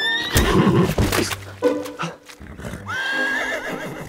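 A horse neighing: a burst in the first second, then a long, wavering whinny about three seconds in, over background music.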